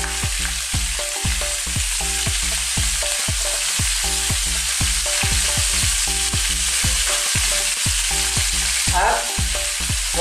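Pork ribs sizzling in hot oil with garlic in a pan, a steady frying hiss. A low, irregular thudding runs underneath it.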